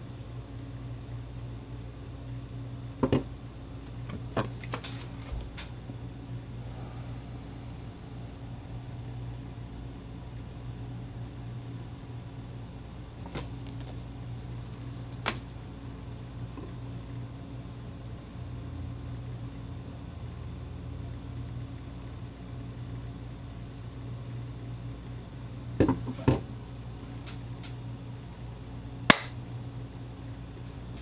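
Scattered sharp clicks and knocks from a plastic GoPro dive housing and its tether cable being handled on a wooden table, over a steady low hum.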